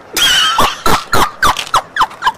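A woman bursting into loud, high-pitched laughter: a sharp opening burst, then a run of short laughs about three a second, each dropping in pitch.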